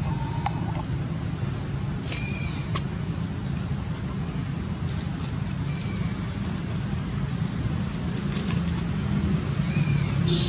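A bird chirping, short high notes repeating about once a second, over a steady low background hum.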